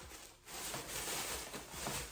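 Faint, uneven rustling of a plastic shopping bag full of clothes being handled, starting about half a second in.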